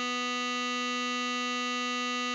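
Tenor saxophone playback holding one long, steady note: written C#5, sounding B below middle C.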